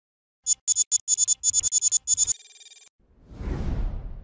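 Electronic intro logo sting: a rapid run of about a dozen short, bright, high-pitched blips lasting nearly two seconds, then a brief held high tone, then a low whoosh that swells about three seconds in and fades.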